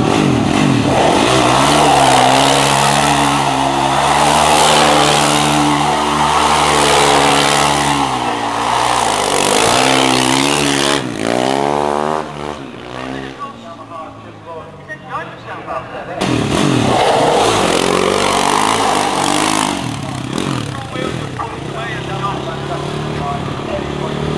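Sports quad bike engine running at high, steady revs, then revving up with a rising pitch about eleven seconds in. It drops away for a few seconds and then runs hard again, with the revs rising and falling.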